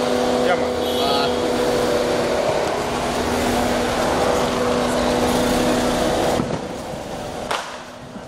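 Street noise around a slow-moving car: a steady engine hum with voices calling out over it, cutting off abruptly about six and a half seconds in.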